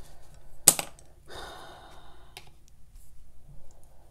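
A paintbrush worked on a plastic watercolour palette. There is a sharp tap about two-thirds of a second in, then about a second of soft scrubbing as the brush stirs paint in a well, then a small click.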